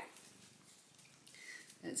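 A domestic cat purring faintly.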